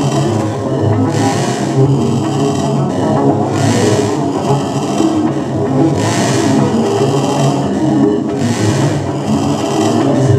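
Live electronic noise music from synthesizers and effects units: a dense, continuous, gritty drone, with a hissing swell that comes back about every two and a half seconds, four times.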